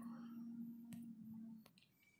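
Two faint clicks, about a second in and again just after one and a half seconds, from a smartphone being handled: a fingertip tapping its touchscreen. Otherwise near silence in a small room.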